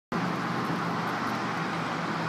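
Steady outdoor traffic noise from distant road vehicles, an even hiss with a low steady hum underneath.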